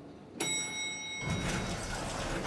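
Elevator arrival chime ringing out bright and clear about half a second in, then the elevator doors sliding open with a rush of noise.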